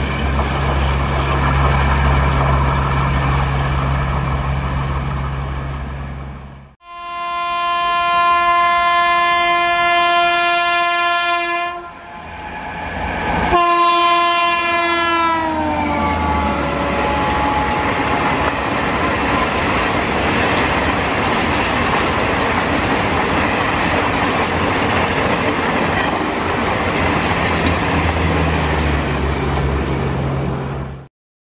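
Indian Railways express train passing at speed. The rumble of the coaches cuts off abruptly, then a locomotive horn sounds one long blast, and a second blast drops in pitch as the locomotive goes by. A long steady rumble and clatter of coaches running over the rails follows.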